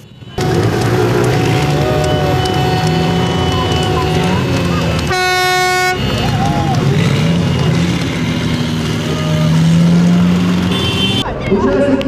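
A column of motorcycles riding past with engines running, mixed with crowd voices. A horn sounds once, about five seconds in, for about a second.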